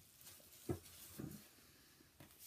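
Faint handling of a DVD box set's cardboard slipcase and case in the hands, with a soft bump about two-thirds of a second in and a lighter one a little after a second.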